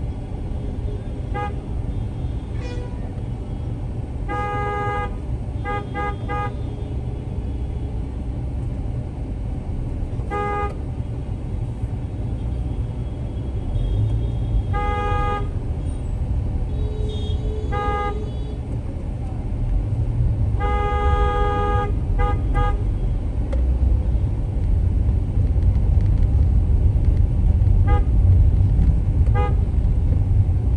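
Vehicle horns honking repeatedly in busy street traffic: about ten toots, mostly short, some in quick runs of two or three and one longer blast, over a steady low engine and traffic rumble.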